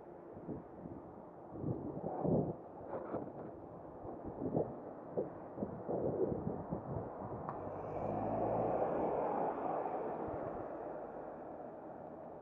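Wind buffeting the microphone of a moving camera in uneven gusts. About eight seconds in, a car passes close by: a swelling and fading rush of tyre and engine noise with a low rumble.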